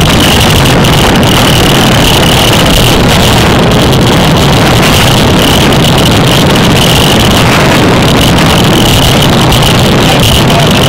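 Loud, steady wind noise buffeting the microphone of a bicycle-mounted camera while riding at speed.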